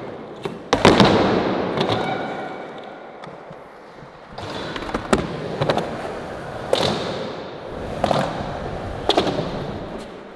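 Skateboards on a concrete skatepark: a loud clack of a board pop or landing about a second in, then wheels rolling on concrete and fading away. From about four and a half seconds, wheels roll again, with several sharp clacks of tail and trucks hitting the ground.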